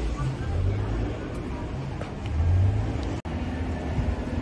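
City street ambience: a steady low rumble of road traffic with passers-by talking, and a momentary cutout in the audio just after three seconds in.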